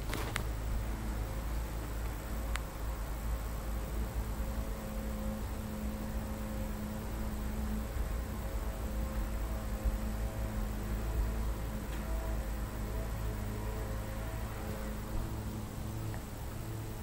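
A steady low hum with a faint steady tone and faint short tones above it, from a small motor or fan.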